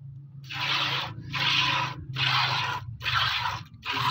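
Hand-milking a cow: four squirts of milk hiss into a part-filled steel bucket, about one a second.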